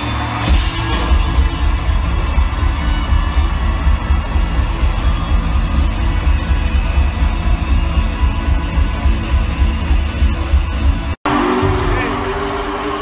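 Live band music heard from the audience in an arena, with electric guitar over a heavy, booming bass. The sound cuts out for an instant near the end and a different stretch of the performance starts.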